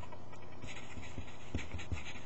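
Pencil writing on paper: short scratchy strokes that begin about half a second in, with a few soft knocks of the hand and pencil against the desk.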